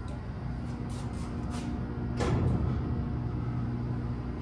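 A steady low hum with several sharp clicks and rattles, the loudest a little past halfway through.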